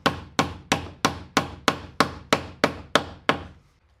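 Hammer driving a cable staple over the Romex wire into a wooden wall stud: about eleven quick, even blows, roughly three a second, stopping shortly before the end.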